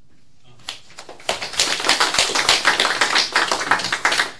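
Audience applauding. It begins about a second in and quickly builds into steady clapping.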